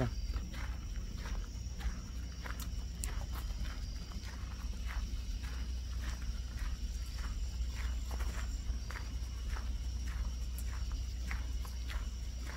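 Footsteps of a person walking on a trail, about two steps a second, over a steady high chirring of crickets and a low steady rumble.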